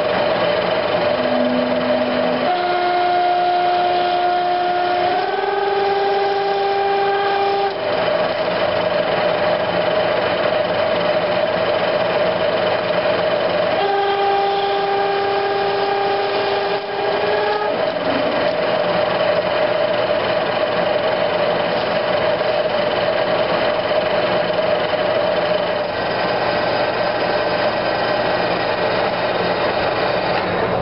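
A Clausing manual lathe running while a 1-1/4 inch twist drill cuts into a spinning Delrin bar, with a steady whine. Over it come several stretches of squealing from the drill in the plastic, each holding one pitch and then stepping slightly higher.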